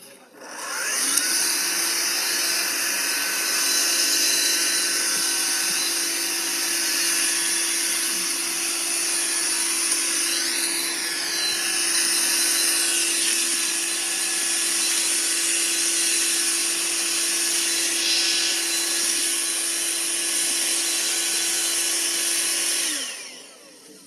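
Bosch cordless stick vacuum cleaner switched on, running steadily with a constant motor whine, then switched off near the end, its pitch falling as the motor spins down. Heard played back through a tablet's speaker.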